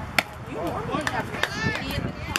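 A single sharp smack about a fifth of a second in, the loudest thing heard, followed by several people's voices calling out at once, with a lighter knock about halfway through.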